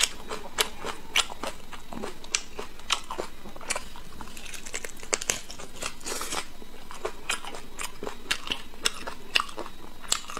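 Close-miked chewing of braised meat pulled from a big pork bone: irregular sharp mouth clicks, a few a second.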